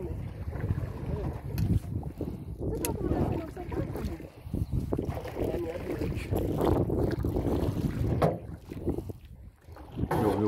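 Wind buffeting an outdoor camera microphone, a steady low rumble, with a few sharp clicks.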